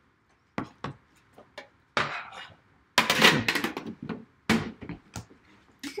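Irregular taps, knocks and scrapes of trading-card packaging, a metal tin and cardboard boxes, being handled and set down on a table, with a louder clattering rustle about three seconds in.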